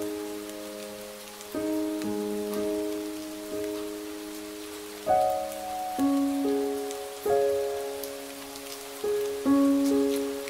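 Slow, soft meditation music: keyboard notes struck every second or so, each left to ring and fade, over a steady patter of rain.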